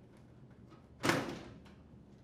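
GE dishwasher door being lifted off its hinges: one sudden clunk about a second in that fades over half a second, with a few light clicks around it.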